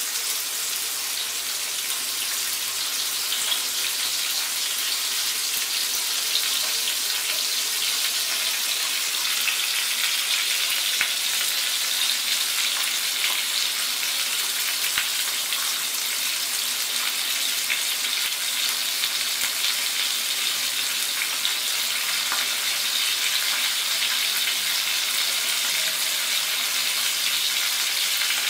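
Two whole sarpunti fish shallow-frying in hot oil in a pan: a steady high sizzle with fine crackling throughout.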